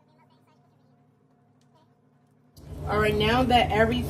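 Near silence for about two and a half seconds, then a voice starts talking over a steady low hum.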